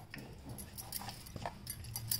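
A few faint, light taps and clicks from hands handling a rolled-out sheet of dough on a board, over a low steady hum.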